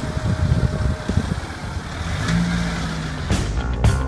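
A motor vehicle's engine running, with a low rumble from wind on the microphone. Music cuts in a little after three seconds.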